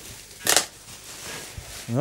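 Plastic bubble wrap rustling and crinkling as it is handled and pulled out of a cardboard box, with one louder crinkle about half a second in.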